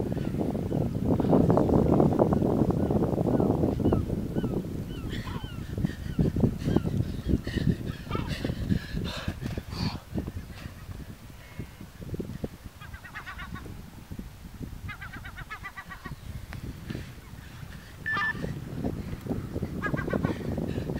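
Birds calling in short runs of repeated honking calls, several times. In the first few seconds a low rumble of wind on the microphone is the loudest sound.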